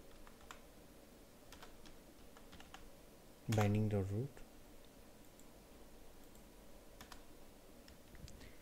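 Faint, scattered keystrokes and clicks on a computer keyboard as code is typed. About halfway through there is one short voiced sound from a man, the loudest thing heard.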